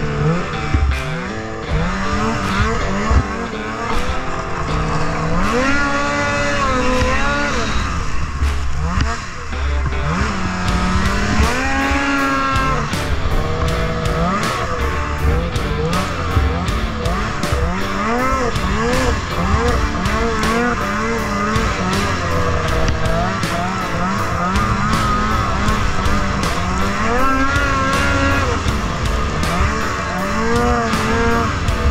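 Polaris IQR 600R snowmobile's two-stroke engine revving up and falling back again and again while riding, with background music with a steady beat over it.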